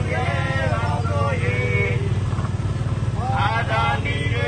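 A small motorcycle engine running steadily close by, with marchers' voices chanting slogans over it during the first second and again near the end.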